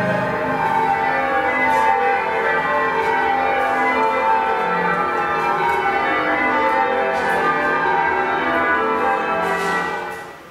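Recorded change ringing of church bells, a dense overlapping peal, played over the coin-operated Christchurch Priory model's loudspeaker; it cuts off suddenly at the very end.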